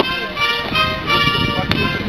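Military band music with held, sustained chords that change to new notes partway through.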